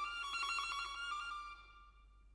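Solo violin holding a high note with a fast flutter, dying away about one and a half seconds in.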